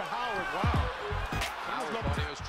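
A basketball dribbled on a hardwood arena floor, two bounces less than a second apart, heard through a game broadcast under arena crowd noise and voices.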